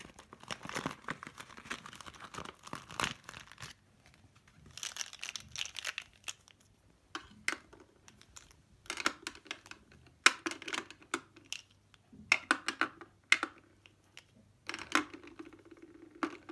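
Plastic packaging crinkling and rustling as pens are taken out of it, then a run of sharp clicks and knocks as the plastic pens are set into a clear acrylic pen organizer.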